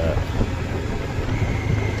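Motorcycle riding along a road: a steady low engine and road rumble with wind noise on the microphone.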